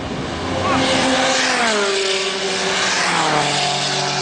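Two cars passing at speed one after the other, engines pulling hard. Each engine note drops in pitch as the car goes by, the first about a second and a half in and the second about three seconds in, then fades away down the track.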